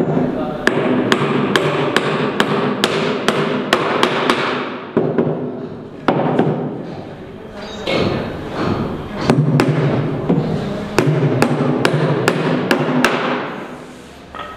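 A hammer striking a timber formwork box, driving nails in with steady blows at about three a second. The blows pause for a couple of seconds midway, then resume in a second run.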